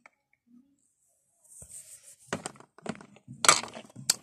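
Close handling noise: a brief rustle, then several sharp knocks and clatters of hard plastic, the loudest near the end, as a toy figure and the phone bump against a plastic dollhouse.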